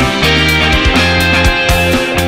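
Rock band music with electric guitars, bass guitar and drums, the drums hitting in a steady beat over held bass notes.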